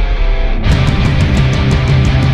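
Heavy rock intro music with electric guitar over a heavy bass line. About two-thirds of a second in, the full band comes in, with drums and evenly spaced cymbal hits.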